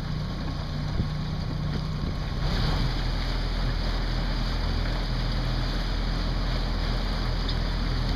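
Boat's outboard motor running steadily at low pitch, with wind and water noise on the microphone; the noise gets louder about two and a half seconds in.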